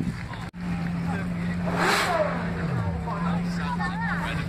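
A car engine running steadily, revved once about two seconds in and falling back, under crowd chatter.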